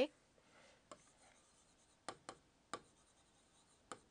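Stylus tapping and writing on an interactive touchscreen display: a faint rub of the pen tip, then about five short sharp taps at uneven intervals.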